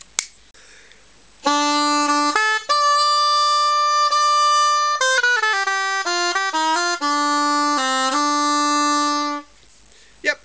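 Spanish soprano shawm played on a newly finished cane double reed that blows easily, tested by playing a short phrase. It starts on a low note, jumps to a long held note an octave higher, runs quickly down through short notes and ends on a long low note about half a second before the end.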